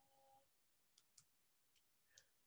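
Near silence, with a few faint computer mouse clicks about a second in, advancing a slideshow.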